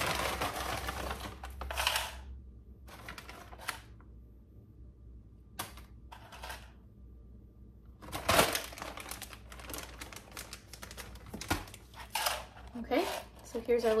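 Plastic snack bag of mini pretzels crinkling and rustling as it is handled and pretzels are picked out by hand, in several bursts with short quiet gaps between them.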